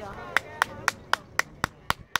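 One person clapping hands in a steady rhythm, about four sharp claps a second, starting about a third of a second in.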